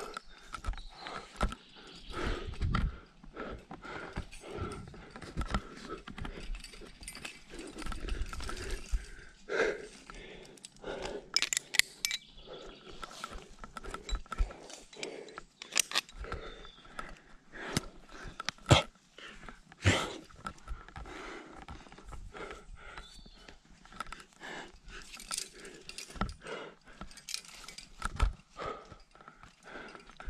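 A barefoot rock climber moving on the rock: irregular scrapes, knocks and sharp clicks of hands, feet and gear against the stone, with heavy breathing. Partway through, the rope is handled and clipped into a quickdraw.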